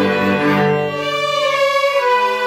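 A string orchestra of violins, violas and cellos playing slow-moving held chords. The lower parts drop away briefly midway, leaving a high held note, before the full sound returns.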